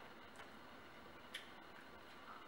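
Near silence: room tone with a few faint short clicks, the sharpest about two-thirds of the way through.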